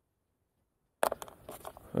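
After a second of silence, a few short, light clicks of the used plastic pheromone-dispenser blister packs being handled, with a brief spoken "ja" at the very end.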